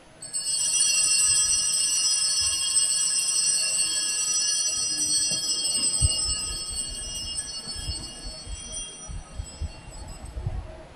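Altar bells rung at communion: a bright ring of many high tones starts suddenly, holds for about six seconds and then fades out. Low knocks and rumbles come in under the fading ring.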